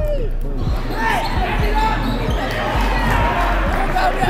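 Basketball bouncing on a wooden gym floor, about two bounces a second, with indistinct crowd voices around it.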